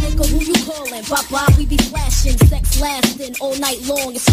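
Hip hop track playing: a rapped vocal over a beat with deep bass-drum hits that drop in pitch.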